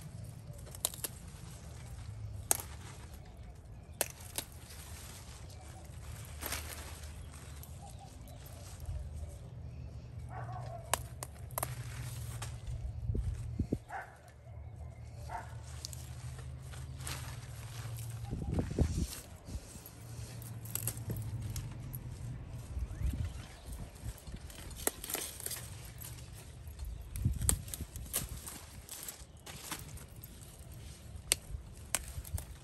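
Scattered sharp clicks and knocks, with a few stronger soft thumps, over a low steady hum that drops out twice.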